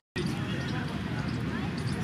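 A brief dropout to silence at an edit, then steady low rumbling background noise with faint voices in it.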